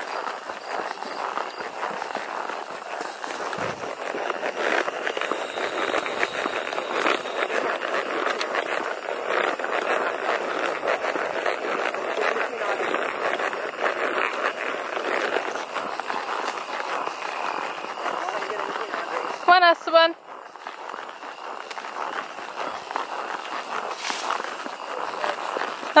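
Horse walking on a paved road: a steady jostling clatter of hoofbeats and handling noise from a camera carried on horseback. A short wavering voice-like sound comes about twenty seconds in, after which the clatter drops to a quieter level.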